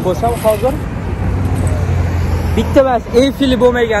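A low, steady rumble of road traffic, between short stretches of a man talking.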